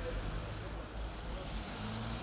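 Street ambience: steady traffic rumble with faint, indistinct voices of people nearby.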